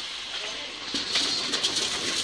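Spatula stirring thick pirão in an aluminium pot on the stove. Light scrapes and ticks against the pot start about a second in, over a steady hiss of the hot pot.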